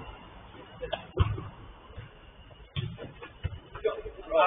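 Players' scattered shouts on a five-a-side pitch, with a few sharp thuds of the football being kicked; the loudest thud comes about a second in and another near three seconds.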